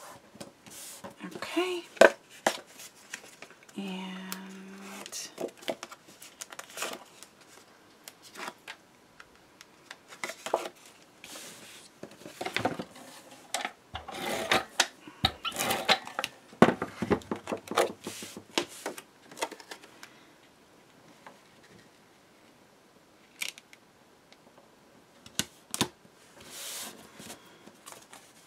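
Cardstock and paper being handled on a tabletop: irregular rustling, sliding and light taps and clicks as the pieces are positioned, pressed and turned over, busiest about halfway through.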